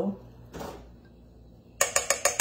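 A spatula scrapes briefly inside a glass measuring cup. Near the end comes a quick run of light ringing taps, about ten a second, as the spatula is knocked against the rim of a metal mixing bowl to shake off the dressing.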